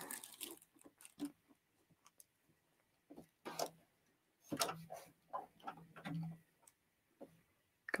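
Domestic sewing machine making a few slow stitches in short bursts, with light ticking and a faint motor hum, as the fabric is eased back under the presser foot.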